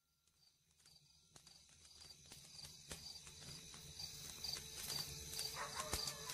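The opening of the slideshow's soundtrack fades in from silence and grows steadily louder. It is a rhythmic clip-clop like horse hooves over a low rumble, with a short high blip repeating about twice a second.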